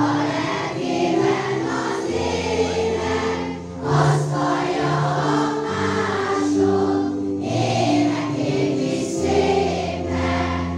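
A group of schoolchildren singing a song together as a choir, in held notes that move from one to the next, over an accompaniment of low sustained notes.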